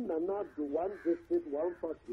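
A man's voice talking over a telephone line, narrow and thin in tone.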